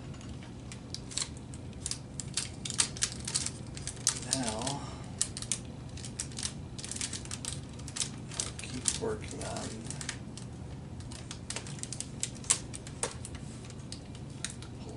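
Iron-on plastic covering film crackling in quick, irregular clicks as it is pulled taut and bonded onto a model airplane wing tip with a heat sealing iron, over a steady low hum.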